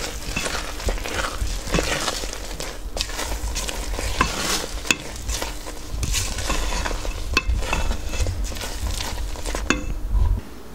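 A spatula folding oats and coconut through a thick, hot cocoa-sugar mixture in a stainless steel pot, with wet stirring and scraping and occasional short knocks against the pot.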